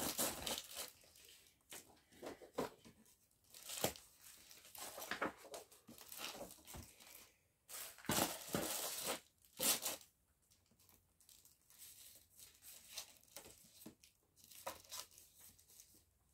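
Plastic-sleeved cross-stitch kit packets rustling and crinkling as they are handled and slid into a plastic storage bin, in irregular bursts, a few louder ones about a third of the way in and just past the middle.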